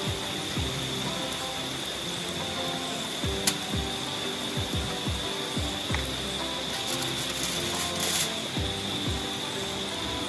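A utensil scraping and knocking in a frying pan as scrambled eggs are scooped out, with scattered low thuds. Background music and a steady high-pitched tone run underneath.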